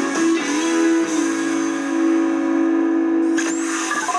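Country music playing on an FM radio: guitar over long held notes. The music changes abruptly a little before the end.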